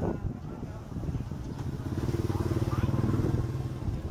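A small motorbike engine going past close by: a steady pulsing hum that builds over a couple of seconds, peaks and then eases off near the end.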